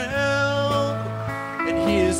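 Country-rock band playing live without vocals: electric guitars, bass and drums, with pedal steel guitar notes sliding up near the start and gliding down near the end over a steady bass note.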